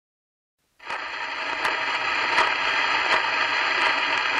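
Gramophone record surface noise: a steady, thin-sounding hiss and crackle that starts suddenly just under a second in, with a sharp click about every three-quarters of a second as the needle rides the worn groove.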